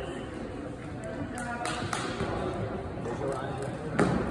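Spectators chattering in an echoing sports hall during a floorball penalty shot, with a few light clicks about a second and a half in and a sharp knock near the end as the shooter reaches the goalkeeper.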